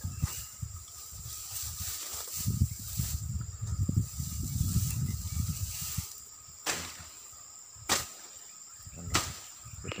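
Wind gusting on the phone's microphone as a low rumble, over a steady high insect drone from the forest, with three sharp clicks in the second half.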